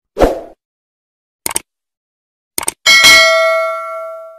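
Subscribe-button end-card sound effects: a short thump, two pairs of quick clicks, then a loud bell ding about three seconds in that rings and fades slowly.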